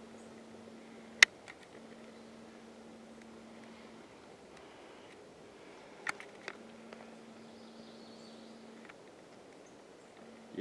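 Quiet outdoor forest ambience with a faint low hum that stops and starts several times, broken by a loud sharp click about a second in and two smaller clicks around six seconds in.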